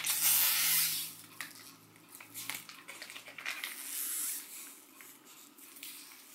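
A small plastic face-mask sachet crinkling and crackling in the hands as it is twisted and pulled at to tear it open, loudest in the first second, then fainter scattered crackles.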